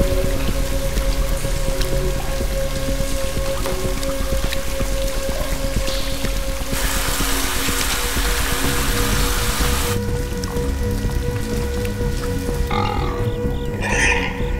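Suspense film score: one long held note over a low pulse, with a hiss of running and dripping water. The water grows louder about seven seconds in and falls away at about ten seconds.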